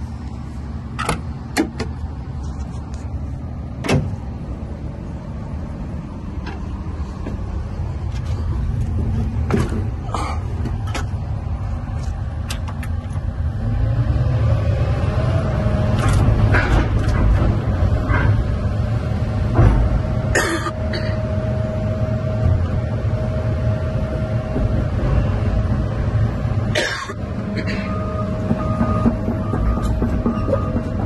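Diesel engine of a Doosan DX350LC-5 hydraulic excavator running steadily, with a few clicks and knocks. About halfway through it speeds up and gets louder, and a steady whine holds from then on as the boom and bucket are worked.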